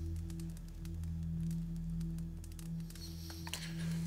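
Low, sustained drone of dramatic background score: a few steady held low tones.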